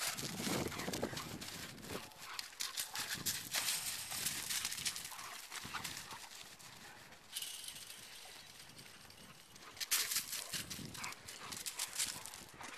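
Cane Corso dogs running and playing close by on grass: a quick, irregular run of footfalls, rustles and short knocks. The sounds thin out after about seven seconds and pick up again near the end.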